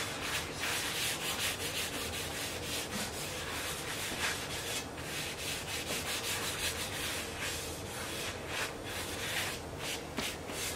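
Oiled cloth rubbing over a shovel's metal blade in quick, repeated wiping strokes, spreading vegetable oil on the freshly sharpened blade to keep off rust.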